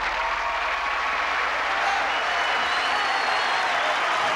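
Studio audience applauding steadily after a live rock band finishes a song.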